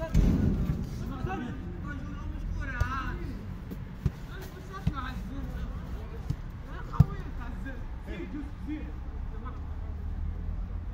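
A football kicked and passed on an artificial-turf pitch: a series of sharp single knocks spaced a second or more apart, the sharpest about seven seconds in, with players' voices calling between them. A brief low rumble of phone-handling noise right at the start.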